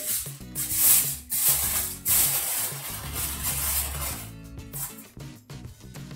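Aluminium foil crinkling and rustling in a few bursts, loudest in the first half, as it is pulled over and pressed down around a pan of vegetables.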